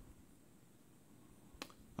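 Near silence with a single short click about one and a half seconds in: a button pressed on the handheld remote to go back a menu.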